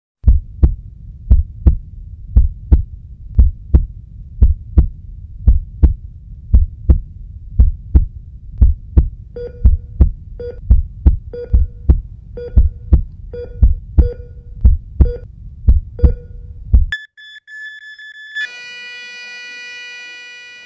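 Heartbeat sound effect: a double lub-dub thump that repeats steadily, joined about halfway through by a short patient-monitor beep on each beat. Near the end the beating cuts off suddenly and a continuous monitor flatline tone sounds, which signals cardiac arrest.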